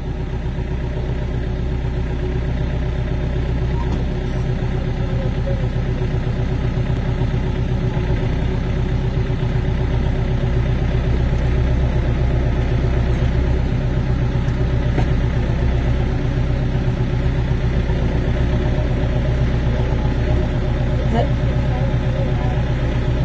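Tractor engine running steadily while the front loader is raised, getting gradually louder.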